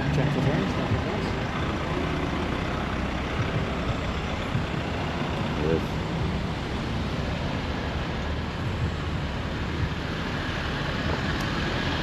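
Busy street traffic, with vans and cars driving past close by, making a steady traffic noise.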